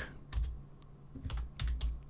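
Computer keyboard keystrokes: a handful of separate, unevenly spaced key presses as a terminal command is typed.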